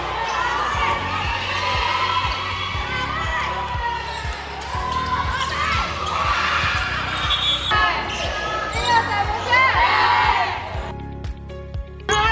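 Basketball game in a gym: a ball bouncing on the hardwood floor again and again, with players' voices calling.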